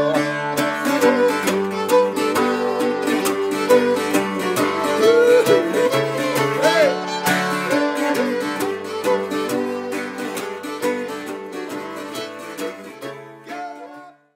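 Instrumental folk tune on fiddle and a plucked round-backed string instrument, the fiddle sliding and bending notes partway through. The music gradually fades out over the last few seconds.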